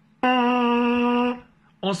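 Lips buzzing into a plastic trombone mouthpiece on its own, sounding one steady buzzy note held for about a second.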